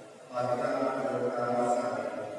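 A man's voice chanting a psalm line into a microphone. It is one phrase on a nearly level pitch, beginning about a third of a second in after a short pause.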